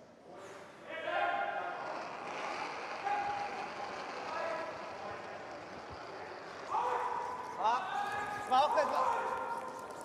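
Curling players' voices calling across the ice, with louder shouted calls near the end.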